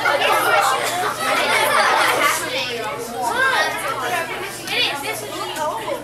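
A roomful of children's voices chattering and exclaiming over one another, several high voices overlapping at once.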